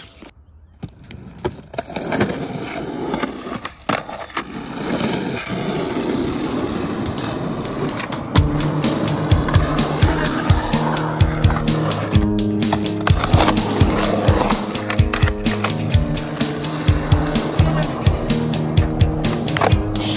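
Skateboard wheels rolling on rough concrete, with sharp clacks of the board. From about eight seconds in, background music with a steady beat plays over it.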